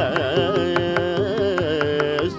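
Male Carnatic vocal in rāga Keeravani, the voice sliding and oscillating through ornamented notes, over a steady accompaniment of drum strokes.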